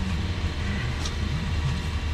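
Car engine idling steadily at a low pitch, left running to warm up in freezing weather so the snow on the car melts.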